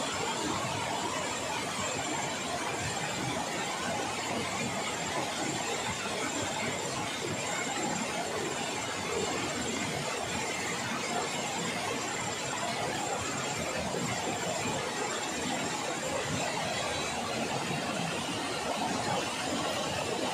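Steady rushing of a river, an even wash of water noise without a break, with a faint high steady whine above it.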